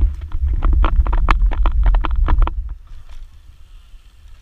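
Wind buffeting the microphone of a camera mounted on a moving road bike, with irregular clicks and rattles over it; the loud rumble drops away suddenly after nearly three seconds.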